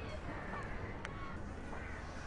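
Faint outdoor background with a steady low hum and a few faint bird calls, with one small click about a second in.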